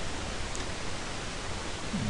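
Steady hiss from a voice-over microphone's noise floor, with a faint low hum underneath.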